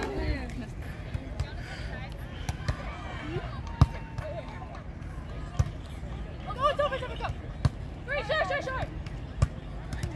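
Several sharp slaps of hands and forearms striking a beach volleyball during a rally, the loudest about four seconds in, with players' short calls in between.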